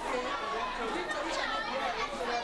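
Chatter of many overlapping voices in a crowded classroom full of schoolchildren, a steady hubbub with no single voice standing out.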